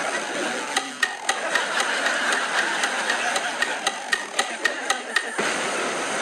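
Electronic keyboard playing a steady clicking beat, about four clicks a second, over a constant hiss-like background. It cuts off suddenly near the end.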